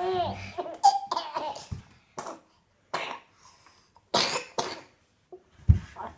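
A baby laughing in a string of short, breathy bursts, about one a second, with quiet gaps between them.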